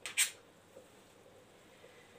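A metal spoon briefly scraping across an oiled aluminium baking tray, once, just after the start, followed by faint room tone.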